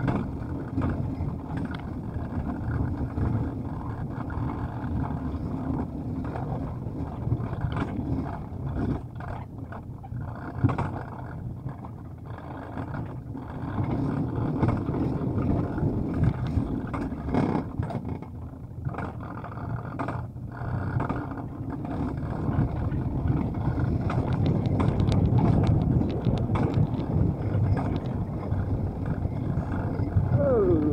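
Alpine coaster sled running down its steel tube track: a steady rumble from the wheels on the rails, with occasional clicks and knocks. It grows louder in stretches, in the middle and again near the end.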